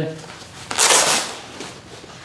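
Backpack fabric and straps rustling as the pack's detachable lid is handled and pulled free, with one brief burst about a second in.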